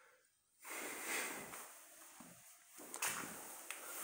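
Soft rustling, breathy noise with a couple of light clicks about three seconds in, after a brief moment of dead quiet at the start.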